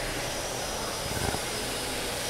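Steady rushing background noise, even throughout, with no distinct event in it.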